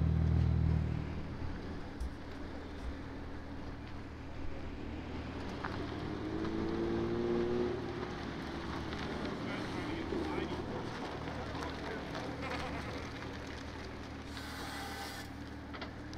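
Toyota GR Supra's turbocharged inline-six running at low speed as the car rolls past. It is loud for about the first second, then drops away to a low, steady hum.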